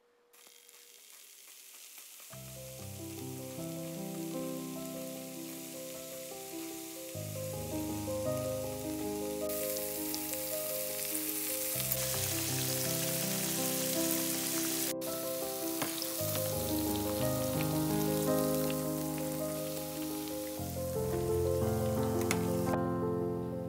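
Coated pork cubes deep-frying in hot oil, a steady sizzle that grows louder about nine seconds in. Background music with melodic notes plays over it.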